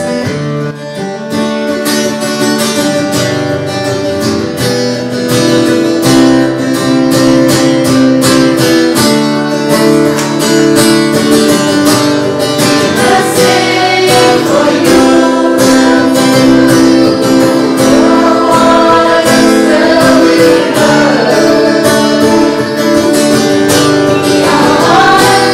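Acoustic guitar strummed in a steady rhythm with several voices singing the song together; the voices come through more strongly from about halfway on.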